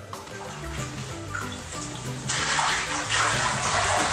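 Water sloshing and swishing inside a vinyl waterbed mattress as a cat runs and jumps across it. The rushing noise starts suddenly about halfway through, over background music.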